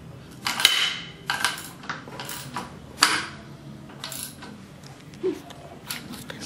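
13 mm ratchet wrench tightening a wheelchair wheel's axle bolt: a series of irregular metallic clicks and clinks with short ringing, the loudest about half a second in and about three seconds in.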